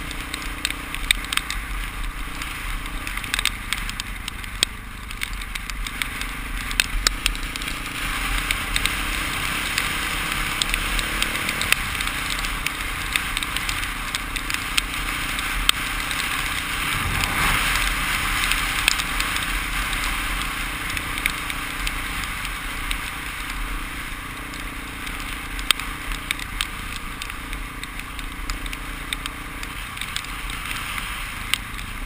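Dirt bike riding over a gravel road, heard through a helmet-mounted action camera: a steady rush of wind and road noise with frequent small clicks and knocks, and a low rumble underneath. The rush swells for a few seconds past the middle.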